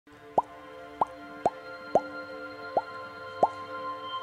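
Six bubbly plop sound effects, each a quick upward-gliding pop, about half a second apart over a sustained musical chord.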